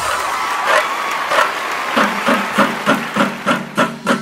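Noisy crowd din at a celebration, then a steady beat of sharp percussion hits, about four a second, comes in about halfway through.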